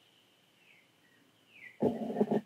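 Near silence with faint room tone and a couple of faint high chirps. A short low vocal sound from the man starts just before the end.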